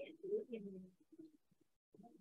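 A person's voice, soft and without clear words, trailing off about a second in, then faint scraps of sound.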